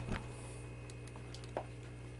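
Faint handling of a clamp meter and its test leads: a couple of small clicks, one just after the start and one about a second and a half in, over a steady low hum.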